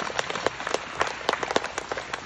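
Applause from a small audience: a run of separate hand claps at an uneven pace, several a second.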